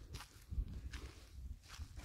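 Faint, irregular footsteps of someone walking.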